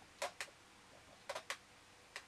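Light hard clicks, two quick pairs about a second apart.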